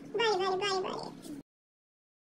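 A woman's high-pitched, wordless voice with a wavering pitch, cut off abruptly about a second and a half in, followed by dead silence.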